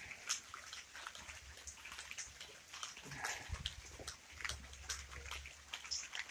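Faint rain dripping: scattered drops ticking at irregular intervals, with a low rumble in the second half.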